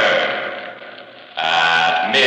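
A man's drawn-out, wavering shout of "Murder!" that echoes and dies away. About a second and a half in, a loud music sting cuts in suddenly.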